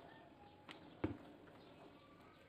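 Near silence: faint room tone with two brief faint clicks, about a third of a second apart, around the middle.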